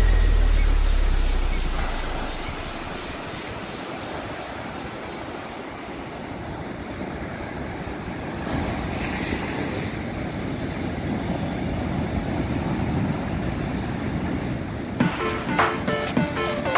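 Ocean surf breaking and washing up a sandy beach as a steady rush of noise, swelling louder a little past halfway through. Background music fades out at the start and comes back in shortly before the end.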